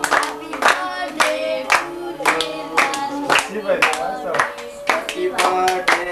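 A group singing with rhythmic hand claps in time, about two claps a second.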